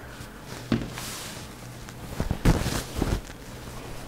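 Large sheet of quilt batting being handled and spread over a table: soft rustling with a few bumps, the loudest about two and a half seconds in.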